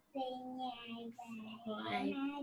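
A child's voice, fainter than the talk around it, drawn out in a sing-song way with long held syllables, heard through a video call.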